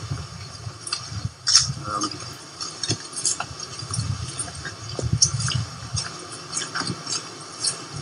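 Footsteps of a small group walking on hard paving, heard as irregular clicks and taps over a low rumble of wind and handling on the microphone.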